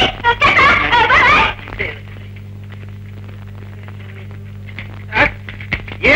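A voice for about the first second and a half, then a steady low electrical hum from the old film soundtrack, broken by one short sound just after five seconds.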